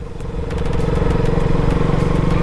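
KTM RC 200's single-cylinder engine running at steady revs while under way. It grows louder in the first half second, then holds an even note.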